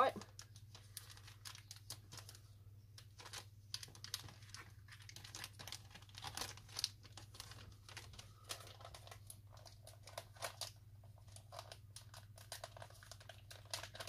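A plastic bag of cosmetic clay being crinkled and pulled at while being torn open, a bag that is really hard to open: a run of crackles and rustles with short pauses.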